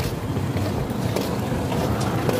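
Wind noise buffeting a phone's microphone outdoors: a steady low rushing noise with no clear tones.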